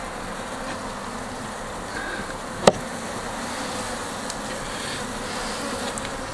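Honeybees humming steadily at an opened hive, with one sharp knock near the middle.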